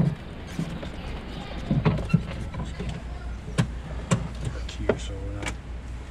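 A small open cart driving slowly, its motor a steady low hum, with a scattering of sharp knocks and rattles from the cart's body and fittings.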